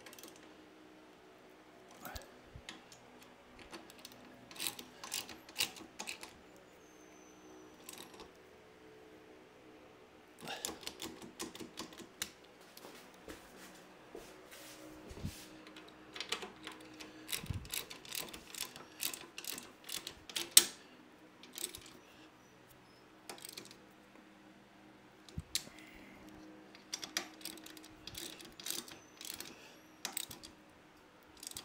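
Ratchet wrench clicking in quick bursts as the rack's mounting bolts are tightened, with scattered single clicks between the bursts and one sharp knock about twenty seconds in.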